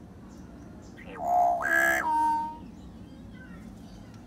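Common hill myna (beo) giving one loud call about a second and a half long, starting about a second in: a rising note, a rough middle and a held whistle at the end.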